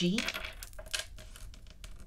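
Small letter tiles clicking against one another and tapping down on a tabletop, a few separate sharp clicks, with a single spoken letter at the very start.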